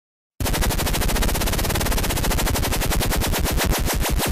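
An electronic stutter effect in a song's intro: a loud, rapid rattle of sharp pulses starts about half a second in and gradually slows down.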